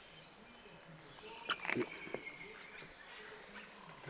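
Faint, steady high buzz of insects, with a few short clicks about a second and a half in.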